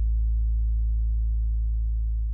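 One low bass note of a worship song's music track, held steady and loud as the last note of the song.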